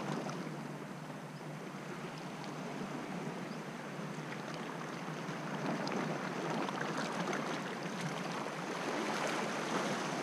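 Small sea waves washing and lapping against shoreline rocks: a steady rushing wash that grows somewhat louder in the second half, with a few faint light ticks.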